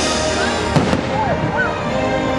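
Fireworks bursting over the show's soundtrack music, with a sharp bang a little under a second in.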